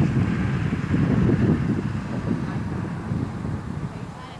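Wind buffeting the camera microphone: a loud, uneven low rumble that cuts off near the end.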